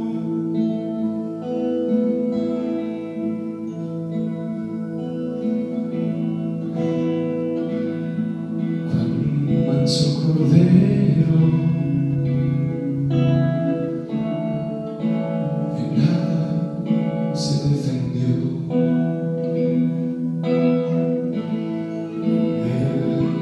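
Live Christian worship song in Spanish: a man singing to his own acoustic guitar, with sustained keyboard accompaniment, heard in a reverberant room.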